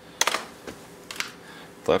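A few light clicks and taps of small electrical parts being handled and set down on a workbench, the sharpest one just after the start.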